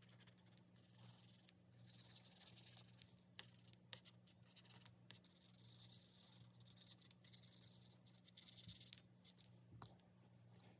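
Faint felt-tip marker scribbling on paper in short repeated strokes, colouring in boxes on a sheet, with a couple of light ticks a few seconds in.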